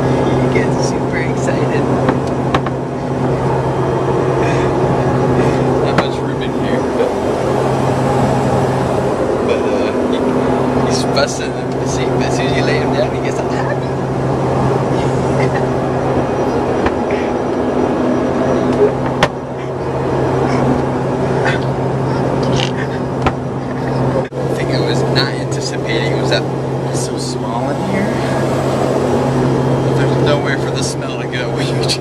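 Steady low drone of an airliner's cabin heard from inside the aircraft lavatory, with scattered small clicks over it. A baby's faint laughs and babbling come and go.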